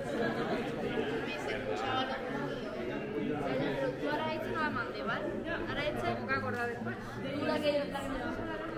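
Indistinct chatter: several people talking at once, their words overlapping.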